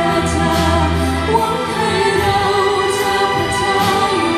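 A female vocalist singing a Thai song with a string orchestra accompanying her: held string chords and a low bass note under the voice.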